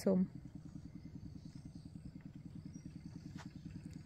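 A small engine running steadily out of sight, a faint, low, rapid and even putter.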